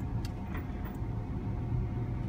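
Steady low road and tyre rumble inside the cabin of a Mitsubishi i-MiEV electric car driving slowly at about 23 km/h, with a faint steady hum and a couple of light clicks.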